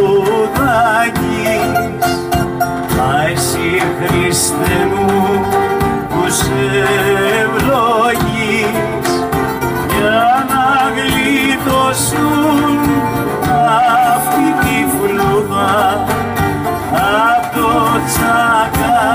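Live band playing a tsamiko, a Greek folk dance tune: acoustic guitar accompaniment under a melody line that wavers in pitch as it rises and falls.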